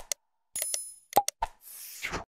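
Subscribe-button animation sound effects: a quick double mouse click, then a short bell ding about half a second in. Two pops and a click follow, and a swoosh comes near the end.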